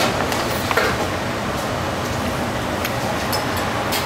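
Steady rushing hiss of kitchen ventilation or air handling, with a few faint clicks.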